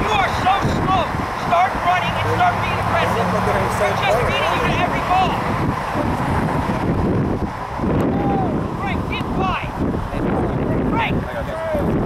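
Wind buffeting the camera microphone in a steady rumble, with distant voices calling out.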